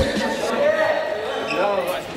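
Indistinct men's voices talking in an echoing indoor sports hall, opening with a single low thump.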